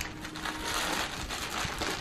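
Packaging rustling and crinkling as it is handled, with a few faint ticks.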